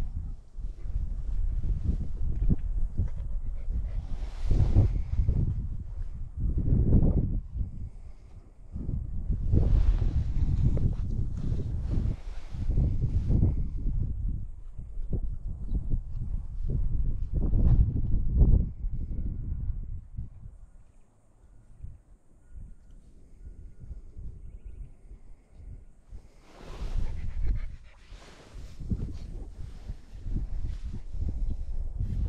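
Wind buffeting the microphone in irregular gusts, with rustling and small knocks as a young German shepherd puppy moves about on a raised mesh dog cot. It drops quieter for a few seconds about two-thirds of the way through.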